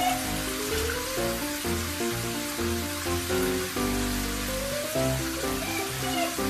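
Water running from a hand-held sink sprayer onto a puppy in a stainless-steel sink, a steady hiss, with background music playing over it.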